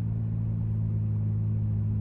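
2008 Chevrolet Impala driving, heard from inside the cabin: a steady low drone of engine and road noise.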